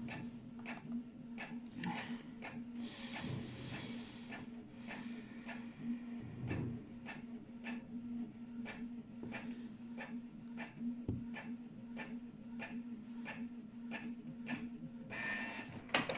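Distant fireworks banging now and then, with a dull boom about eleven seconds in, over a steady run of sharp clicks two or three a second and a low steady hum.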